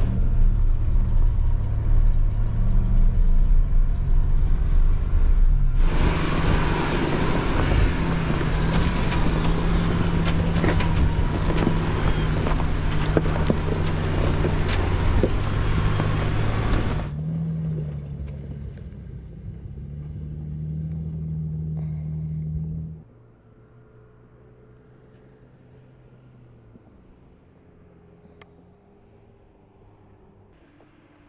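Jeep Gladiator engine pulling at low speed up a steep, rocky hill climb. From about six to seventeen seconds, loud crunching and clicking from the tyres over loose rock is added. The engine then grows quieter and falls away to a faint hum about twenty-three seconds in.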